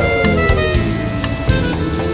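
Instrumental passage of a Calabrian folk song between sung lines: a melody line slides steadily down in pitch over a steady beat.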